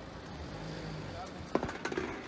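Indistinct voices with a brief low hum, then a few sharp knocks about a second and a half in.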